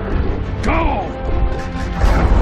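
Film battle sound mix: giant-robot metal crashes and impacts over a heavy rumble, with the score playing underneath. A short rising-then-falling whine comes a little past half a second in.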